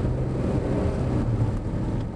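Car cabin noise: a steady low engine hum over road noise as the car pulls away from a stop, the hum fading near the end.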